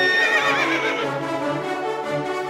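A horse whinnies once, a quavering call lasting about a second at the start, over steady background music.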